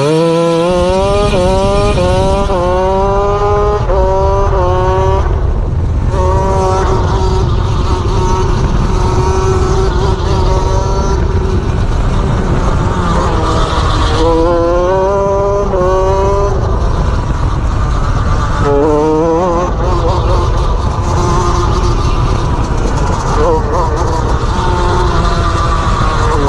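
Shifter go-kart's two-stroke engine accelerating hard. Its pitch climbs and snaps back with each quick upshift: about five shifts in the first five seconds and another run of shifts about fourteen seconds in, with steadier high-revving stretches between. Wind noise from the onboard microphone runs underneath.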